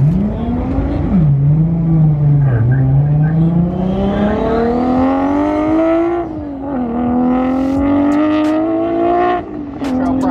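A high-performance car accelerating hard at full throttle. Its engine note climbs steadily through each gear and drops sharply at each upshift, several times.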